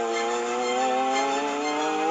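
A single held buzzy tone with several overtones. It begins just before and stops just after, and rises slowly in pitch.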